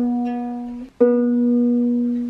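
Ukulele string plucked and left to ring as it is being tuned, then plucked again about a second in. The tuner reads the note as too high.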